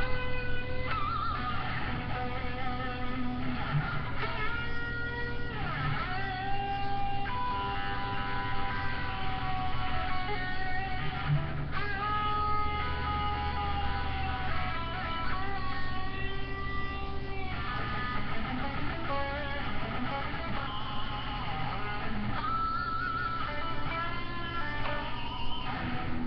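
Electric guitar played alone: single-note lead lines with long held notes, string bends and vibrato, over a steady low hum.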